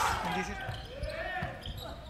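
Basketball court sound in a gym: a ball bouncing on the hardwood floor, with faint voices from the court.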